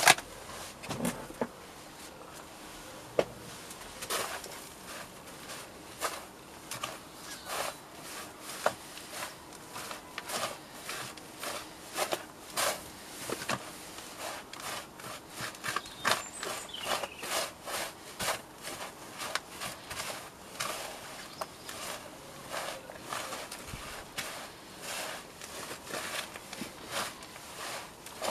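Hands mixing sieved compost, coco coir and perlite in a plastic seed tray: an irregular run of soft rustling and scraping strokes, several a second, as the mix is rubbed and sifted through the fingers.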